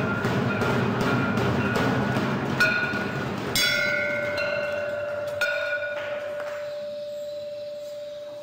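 Hanging brass temple bell rung by hand, struck about four times over a busy clatter, then one long ringing tone that slowly fades.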